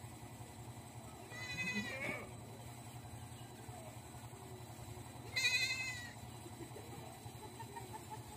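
A goat bleating twice, two short wavering calls about four seconds apart, the second one louder.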